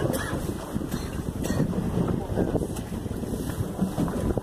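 Steady low engine rumble, with wind noise on the microphone.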